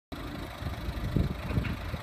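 Ford Focus 1.6 TDCi diesel engine idling steadily.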